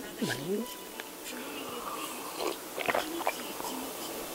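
A brief voiced hum, then faint mouth sounds and a few small clicks as a person raises a mug and takes a drink.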